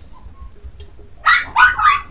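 English Cocker Spaniel puppies yipping: after a quiet first second, three short, high-pitched yips in quick succession.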